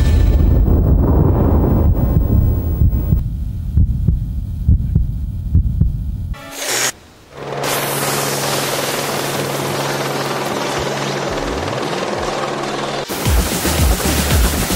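Background music with a heavy low beat, then a helicopter's steady rotor and engine noise for most of the second half as it comes down over the jungle. The music comes back loud near the end.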